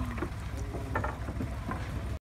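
Steady low engine hum with a few faint clicks over it.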